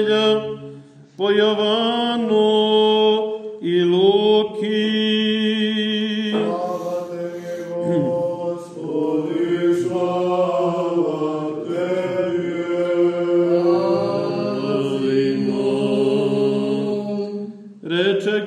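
Orthodox church chant: a slow sung melodic line in long held phrases over a sustained low drone note, with a brief break between phrases about a second in.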